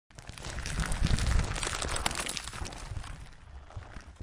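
Logo-intro sound effect of crackling, crumbling debris over a low rumble. It swells to its loudest about a second in, then fades away.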